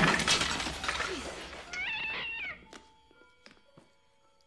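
Garden tools and clutter clattering down onto a concrete floor, the crash dying away over about a second and a half, followed by a cat's single short meow.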